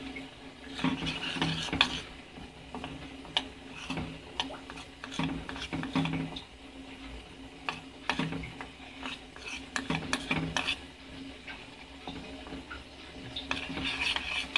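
A spoon stirring thick melting chocolate in a stainless steel bowl, with irregular scrapes and light clinks against the metal.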